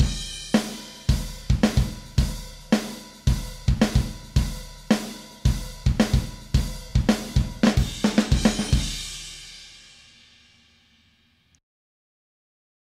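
Multitrack recording of a live drum kit played back: kick, snare, hi-hat and cymbals in a steady beat of about 110 beats a minute, the hits edited into time with the grid. The beat stops about nine seconds in, and the cymbals ring out and fade over the next two and a half seconds.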